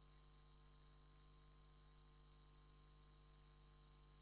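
Near silence: a faint steady low hum with thin, high-pitched constant whines, unchanging throughout.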